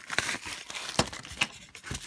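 Rustling and crinkling of a plastic mailer and paper packing slip as a package is opened and its contents pulled out, with a few sharp clicks and snaps, the loudest about a second in.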